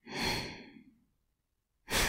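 A woman's breathy sigh, an exhale lasting under a second that fades away; near the end she starts to laugh.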